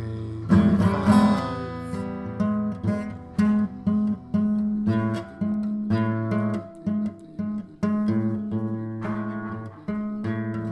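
Acoustic guitar playing an instrumental passage between sung verses: strummed and picked chords, the loudest strums about half a second and a second in.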